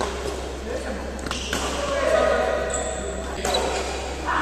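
A badminton rally: sharp racket strikes on a shuttlecock, about four in all, spread unevenly through the rally, with players' voices in between.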